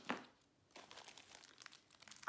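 Faint crinkling of a clear plastic packet being handled, as light scattered crackles from just under a second in, after one sharper handling sound at the very start.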